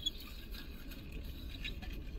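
Low steady hum of a car cabin, with a few faint clicks and rustles from eating and handling a napkin. There is one small sharp tick at the very start.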